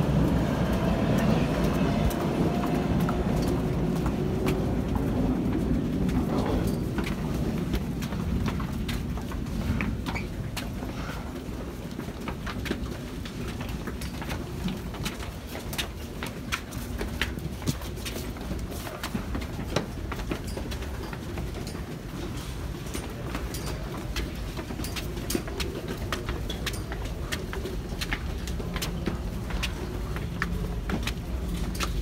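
Crowd of commuters on the move in a subway station. A low rumble is loudest for the first few seconds and then eases, and from about eight seconds in there are many quick footsteps and heel clicks on hard stairs, over a low murmur of voices.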